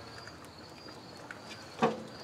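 Faint clicks of charcoal briquettes being nudged with metal tongs in a smoker firebox, over a steady high insect drone. A brief vocal sound comes near the end.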